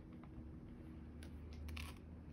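Faint handling sounds from a Stamparatus stamp positioning tool as hands press its hinged plate down onto the card, with a few light clicks near the end.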